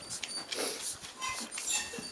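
A litter of puppies suckling at their mother: short high squeaks and whimpers over a run of wet suckling clicks and smacks.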